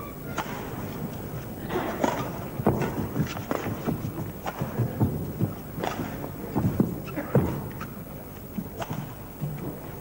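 Badminton rally: rackets striking the shuttlecock and players' feet pounding and sliding on the court, an irregular run of sharp taps and thuds, two or three a second.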